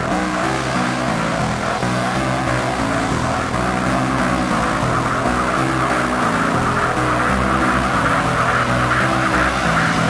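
Tech trance music: a driving electronic mix with a fast pulsing synth bassline and a steady beat, and a hissing sweep that builds in the upper range toward the end.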